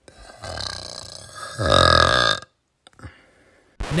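A long burp, from the soundtrack of an animated clip, that swells to its loudest just past halfway and then breaks off.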